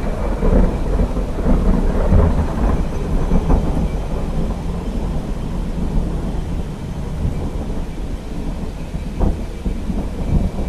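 Thunderstorm sound: low rolling thunder over a steady hiss of rain, swelling and easing and slowly fading, with a sharper crack about nine seconds in.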